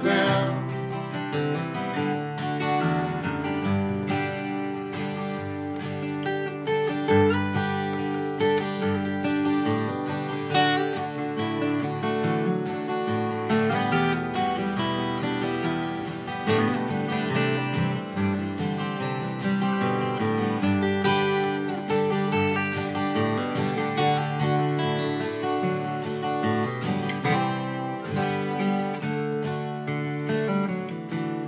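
Two acoustic guitars playing an instrumental passage between verses, a steady run of strummed and picked chords with no singing.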